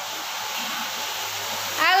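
A steady rushing noise with a low hum. Near the end a woman calls out a long, drawn-out "halo".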